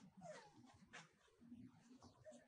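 A young macaque gives a faint, brief whimpering call, with a soft click about a second in.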